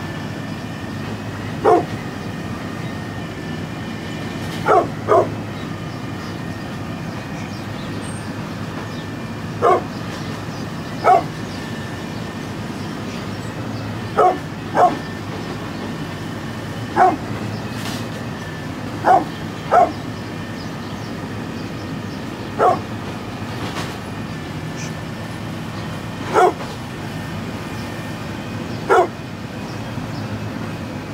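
Brindle pit bull barking at intervals, about thirteen short barks, some single and some in quick pairs, over a steady low background hum.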